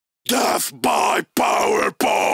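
Harsh, distorted vocal from the band in short, sharply chopped bursts separated by brief gaps of silence.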